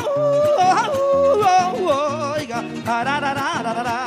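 Panamanian saloma: a singer's yodel-like call, its pitch sliding and breaking, over mejorana string accompaniment of strummed guitar and fiddle in a steady rhythm.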